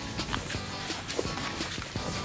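Background music with light, irregular footsteps of children shuffling across a lawn as they move toy horses along.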